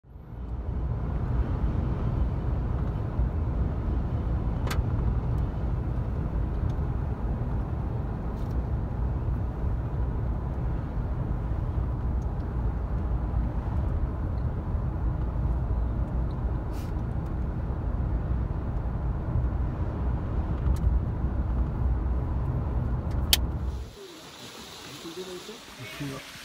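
Steady low rumble of a car driving at highway speed, heard inside the cabin: tyre and engine noise with a few faint clicks. It cuts off suddenly near the end, giving way to much quieter outdoor sound.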